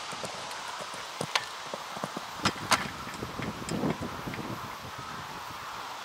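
Steady outdoor hiss with a few sharp knocks, two pairs about a second apart, and a faint distant voice midway.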